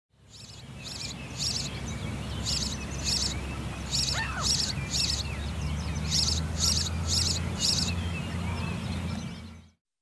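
House sparrow chirping: about a dozen short, high chirps, roughly one or two a second, over a steady low rumble of background noise. The sound fades in at the start and cuts off just before the end.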